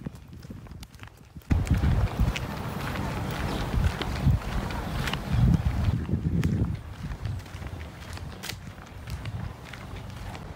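Footsteps in slide sandals, then walking into brush with rustling leaves and twigs and irregular thuds of steps, starting suddenly about a second and a half in and easing off after about seven seconds.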